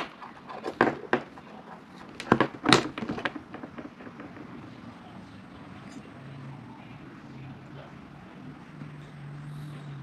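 Light clicks and taps from hands handling a coil of bare copper wire wound on a small plastic tube over a wooden table, about five in the first three seconds and fainter rustling after. A faint low steady hum comes in during the second half.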